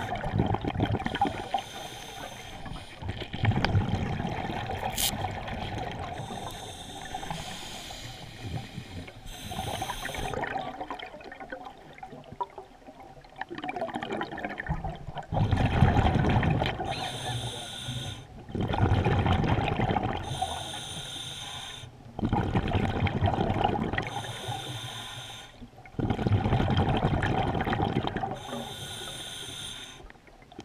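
Scuba diver breathing through a regulator, heard underwater: each inhalation hisses through the demand valve and each exhalation bubbles out of the exhaust. The breaths come about every three to four seconds, most evenly in the second half.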